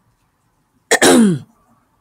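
A woman clears her throat once, about a second in: a short, rasping vocal sound that falls in pitch.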